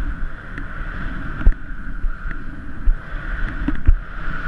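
Wind rushing over a body-mounted GoPro and the low rumble of riding down through soft off-piste snow, with a few sharp knocks, about one and a half seconds in and again near the end.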